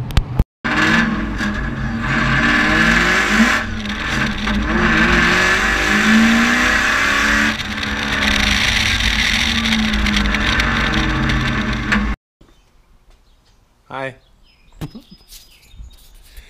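Car engine revving up and down hard with loud exhaust, heard from inside the car during a fast drive. It cuts off suddenly about twelve seconds in.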